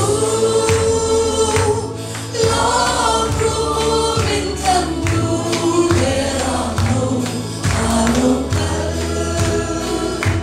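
A woman sings a Christian song through a handheld microphone and PA, over amplified backing music with a steady beat and a strong bass line.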